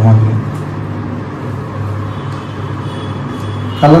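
A steady low hum under a constant background noise, with no clear separate events.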